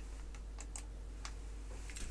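A few faint clicks at a computer, over a low steady hum.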